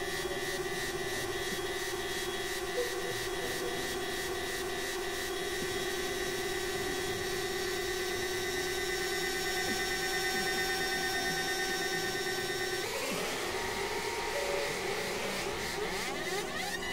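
Electronic synthesizer drone: several steady held tones layered together. About thirteen seconds in, it shifts to a denser texture with sweeping pitch glides.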